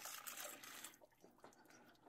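Faint pour of hot water from a glass measuring cup into a mixing bowl of lime jello powder, trailing off within about the first second into near silence.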